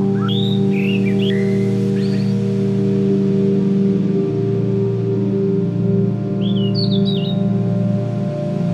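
Ambient drone music: layered low tones held steady, with bird chirps over it in a short flurry in the first two seconds and again about three-quarters of the way through.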